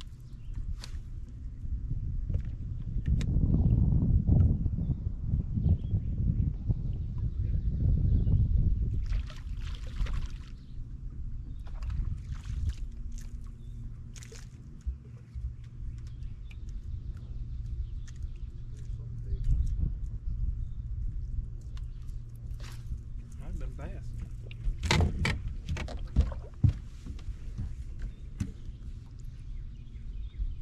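Water sloshing against a bass boat's hull, with two long low surges of rumble in the first ten seconds. A run of sharp knocks and clicks comes about three-quarters of the way through.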